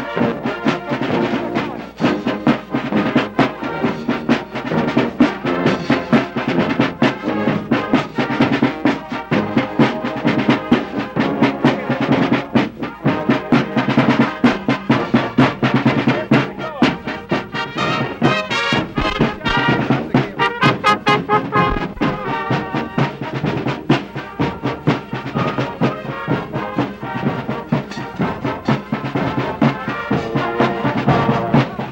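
Marching band playing a brass-led march, trumpets and trombones over a steady drum beat.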